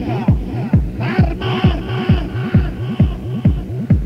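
Electronic dance music from a club DJ set: a steady four-on-the-floor kick drum, a little over two beats a second, each kick dropping in pitch. From about a second in, a higher pitched phrase is layered over the beat.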